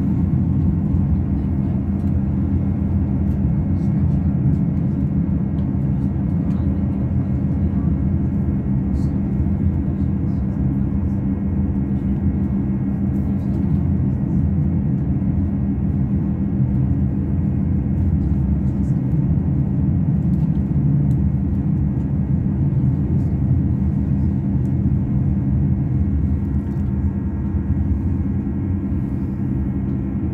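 Inside a Class 158 diesel multiple unit under way: the underfloor diesel engine drones steadily over a heavy, even rumble of wheels on the rails.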